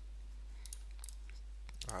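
A few faint computer mouse clicks, spaced irregularly, over a steady low hum.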